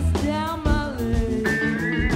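Live blues-rock band playing, with a woman singing lead over electric guitars, bass and drums.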